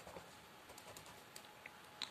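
Faint light scratching and ticking of a red coloured pencil on a paper textbook page as a small picture is coloured in.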